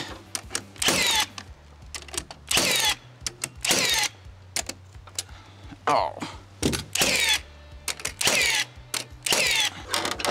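Carpentry work on wooden stair parts: about seven short, sharp, noisy strikes at uneven intervals, with smaller knocks and clicks between them.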